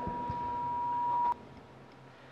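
Public-address microphone feedback: one steady high-pitched ring that slowly grows louder, then cuts off abruptly with a sharp click a little over a second in. A couple of low thumps of the handheld microphone being handled come near the start.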